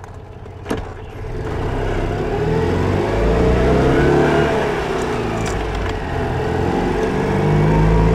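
1981 Citroën 2CV's air-cooled flat-twin engine pulling the car through the gears, heard from the cabin. It is quiet for the first second, with a click, then the revs climb, drop back about five seconds in as the driver shifts, and climb again.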